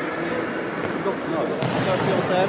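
Table tennis ball clicking off bats and the table in a rally, against a steady background of people's voices in a sports hall.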